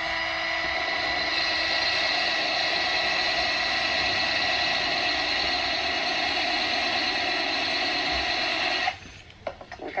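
Cordless drill running steadily, its bit grinding a starting notch into a wet glazed ceramic plant pot for a drainage hole; the drill stops suddenly near the end, followed by a few light clicks.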